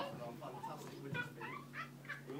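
Indistinct voices murmuring, some of them high-pitched, over a steady low hum.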